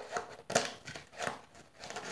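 Scissors cutting through a thin plastic packaging tray, making a few short, irregular snips.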